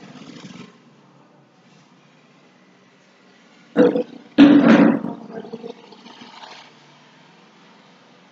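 Two loud, rough bursts of a person's voice close to the microphone about four seconds in: a short one, then a longer one half a second later that trails off.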